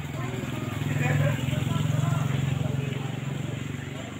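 People chatting in the background over a steady low engine hum with a fast pulse to it, which swells in the middle and eases off near the end.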